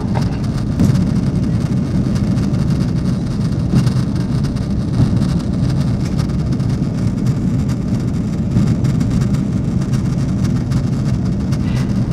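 Steady low roar of a jet airliner's engines and rushing airflow heard inside the passenger cabin during the climb after takeoff.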